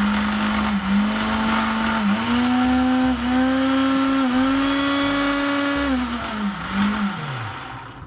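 SilverCrest SSDMD 600 A2 600 W blender running with an empty jug, its motor whine stepping up in pitch as it is switched from 1st through to 5th speed, with a short dip at each change. About six seconds in it winds down, gives one brief surge, and spins to a stop.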